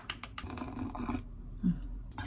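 A plastic spoon stirs a powdered drink in a glass measuring cup, clicking against the glass a few times quickly in the first half second, then stirring more softly.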